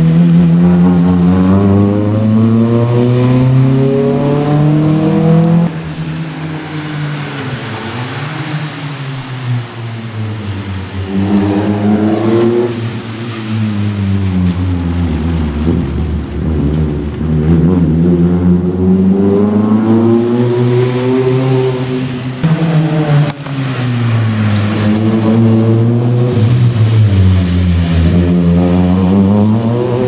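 Suzuki Swift GTi MK1 rally car's 1.3-litre twin-cam four-cylinder engine revving hard under acceleration, its pitch climbing and dropping again and again as it shifts and lifts between corners. The revs fall away sharply about six seconds in and again a little past two-thirds of the way through, then build back up.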